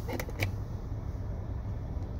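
A few light plastic clicks in the first half second as the overhead sunglass holder of a 2018 Nissan Altima is pressed and drops open, over a steady low hum in the car's cabin.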